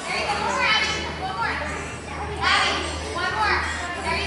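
Young children's high-pitched voices chattering and calling out, with no clear words, over a steady low hum.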